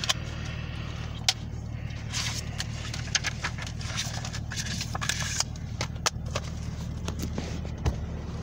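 Handling of a plastic DVD case, disc and paper insert: scattered clicks, snaps and rustling, with a sharp click about a second in and a thump near the end, over a steady low hum.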